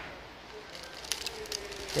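Faint crinkling of the clear plastic bag around a TV remote as it is handled, a few soft crackles about halfway through.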